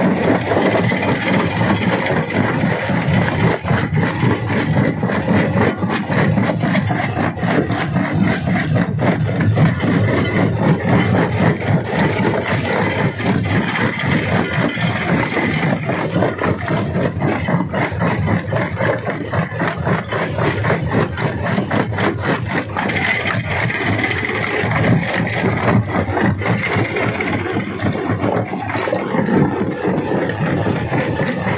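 Rock crusher at work: its engine runs steadily under a continuous dense clatter and rattle of rock being broken and scraped through the machine.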